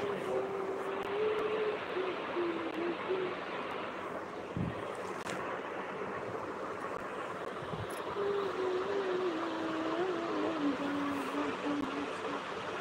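Steady rushing background noise, with a faint wavering voice-like tone heard twice: in the first few seconds, and again from about two-thirds of the way through.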